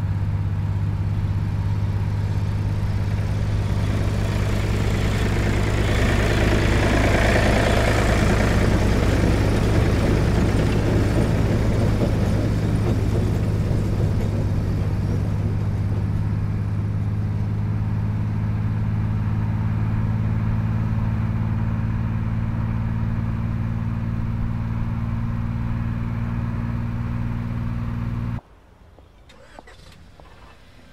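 Steady low engine drone and road noise from vehicles on a highway, a car following a farm tractor. The noise swells for a few seconds in the first third, then cuts off abruptly near the end.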